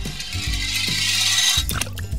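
Die-cast toy car rolling down a plastic slide with a steady rattling hiss that stops after about a second and a half, followed by a few sharp clicks as it drops into a pool of water; background music plays throughout.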